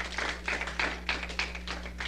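Studio audience clapping, the separate claps dense and irregular, thinning out near the end, over a steady low electrical hum.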